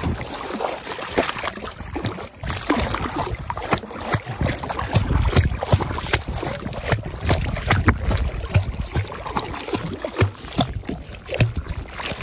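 Water splashing and sloshing close to the microphone as a Labrador puppy paddles through it, many small irregular splashes in quick succession.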